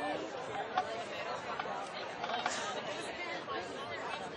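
Crowd of spectators chattering: many overlapping conversations at a steady level.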